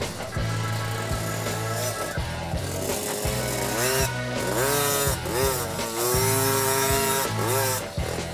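Background music with a steady beat, mixed with a 50cc mini dirt bike's small engine revving up and down repeatedly as it is ridden.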